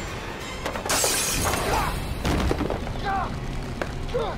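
Glass shattering in a loud crash about a second in, with further crashes later, over tense score music and strained voices in a fight.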